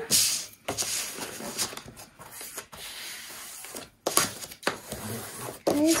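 A sheet of white cardstock being handled on a plastic scoring board, with irregular bursts of paper rustling and rubbing as it is picked up and slid off the board.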